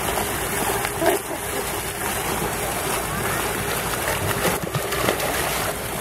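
Water splashing and sloshing as a miniature pinscher is dipped into a fountain pool and paddles, over a steady rush of noise.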